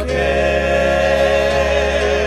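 Gospel singing, several voices holding long notes that waver with vibrato in the second half.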